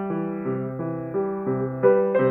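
Steinway & Sons baby grand piano being played: a melody over a bass line, with new notes struck about three times a second.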